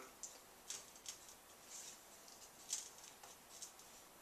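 Faint, scattered light ticks and brushing sounds of fingertips tapping and handling the case of a Looking Glass Portrait holographic display around its capacitive touch buttons.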